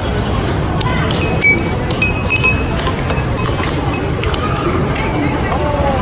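Busy arcade din: crowd chatter and game-machine music, with a few short electronic beeps. Scattered sharp clacks of an air hockey puck and mallets sound through it.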